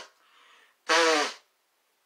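A person sneezing twice in quick succession. The end of the first sneeze falls at the very start, and the second comes about a second in, with a short breath between.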